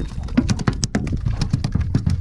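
Redfin perch flapping loose on a plastic board and the boat's deck: a quick, irregular run of slaps and knocks.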